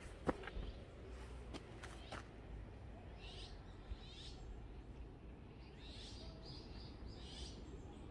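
Small birds chirping in the woods: several groups of short, high chirps from about three seconds in. A few sharp clicks and knocks come in the first two seconds, the loudest just after the start.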